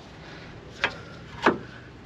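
Two short clicks, the second louder, as a new brake pad is slid into the rear caliper carrier of a Nissan 350Z and knocks against the carrier and its pad clips.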